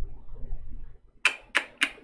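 Computer keys clicking in a quick, even run, about three clicks a second, starting just over a second in, after a faint low rumble.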